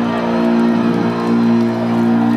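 Live rock band's electric guitars and bass ringing out on a held final chord, a steady sustained drone with no drum hits.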